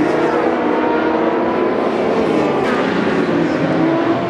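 Endurance racing motorcycle engines running and revving, with several engine notes rising and falling over one another.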